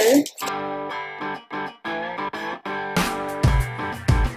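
Background music: a run of plucked guitar notes, joined by a steady low beat about three seconds in.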